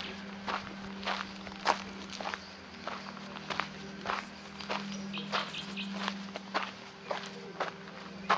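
Footsteps on dry leaf and bark litter, about two steps a second.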